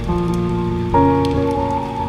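Mellow piano chords, a new chord entering about a second in, laid over a steady rain ambience with light patter.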